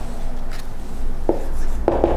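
Marker writing on a whiteboard: a few short strokes near the end, over a low steady hum.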